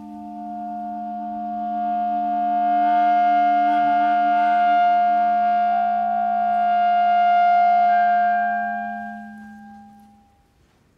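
Two clarinets holding long, steady notes together over a low sustained tone. The chord swells in over the first few seconds and fades out near the end. The upper note steps up slightly about six seconds in.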